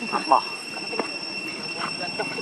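A steady high-pitched whine of two even tones, with short voice-like calls at the start, loudest about a third of a second in, and a single sharp click about a second in.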